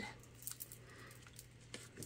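Faint handling of a sheet of cardstock, with a couple of light soft taps, as it is picked up for cutting with scissors. A low steady hum sits underneath.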